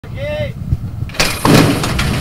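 Horse-racing starting stalls banging open about a second in, a loud sudden metallic crash followed by the clatter of the field breaking away. A brief pitched call is heard just before.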